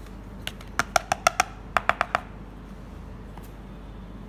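A spoon tapped quickly against a bowl's rim to knock corn flour off it: about ten sharp, ringing taps in two short runs.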